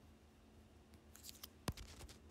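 Faint room tone, then a few short scratchy strokes and one sharp click in the second half: a plastic comb being handled and drawn through fringe hair close to a phone's microphone.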